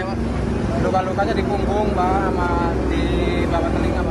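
A man talking over a steady low rumble of vehicle engines and street traffic.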